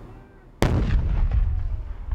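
A single loud explosion about half a second in, sharp at the onset and followed by a low rumble that carries on. It is an improvised explosive device being blown up in a controlled detonation.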